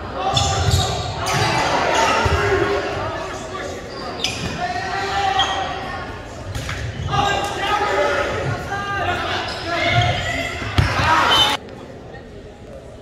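A volleyball rally in a gym: sharp smacks of the ball being struck, with players calling and spectators shouting and cheering, all echoing in the hall. The noise drops off suddenly near the end.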